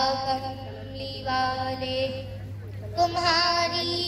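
A girl singing an Urdu naat through a microphone and PA, without instruments, in long held, ornamented notes. One phrase ends about two seconds in, and after a short pause the next begins.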